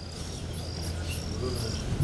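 An insect chirping: short high chirps that alternate between two close pitches, about three a second, over a low steady hum.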